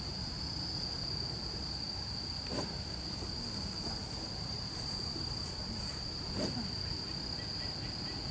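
Insects chirring in one steady, unbroken high-pitched trill, with a low even background hum of open air beneath.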